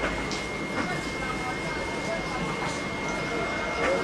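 Outdoor market ambience: faint chatter of voices over a steady background noise, with a thin, steady high-pitched tone running through it.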